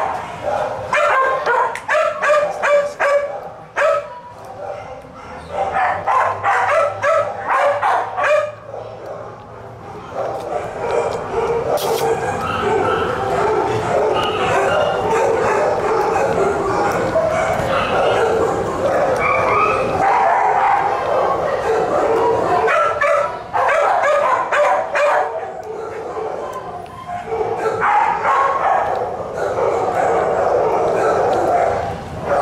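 Several dogs barking and yipping in shelter kennels: quick runs of barks in the first eight seconds, then a dense, overlapping din of barking that carries on to the end.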